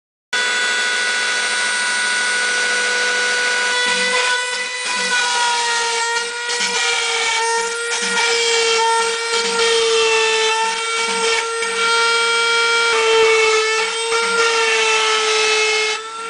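Phlatprinter MKII CNC router cutting quarter-inch balsa at 100 inches a minute: the spindle motor's steady high whine, its pitch wavering slightly as the bit works through the wood.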